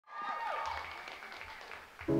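Audience applause with a falling whoop about half a second in, dying away toward the end as the dancers wait to begin.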